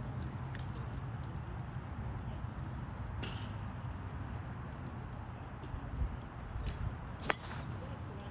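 A driver striking a golf ball on a tee shot: one sharp crack near the end, over a steady low rumble.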